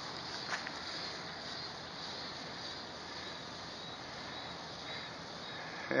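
Steady, faint outdoor background noise with a faint high whine above it and no distinct events.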